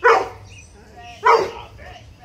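A dog barking twice: two short barks about a second and a quarter apart.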